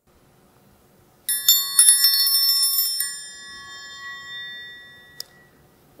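A small metal bell struck several times in quick succession, then ringing out and slowly fading, the kind of bell a teacher rings as a signal for a class to get quiet and listen. A single faint click comes near the end.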